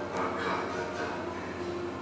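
Demolition excavators' diesel engines running with a steady hum, with a short swell of noise about half a second in.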